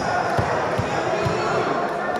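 Bass beat of music through a sports hall's PA, low thumps about two a second that fade out about one and a half seconds in, under crowd chatter echoing in the hall.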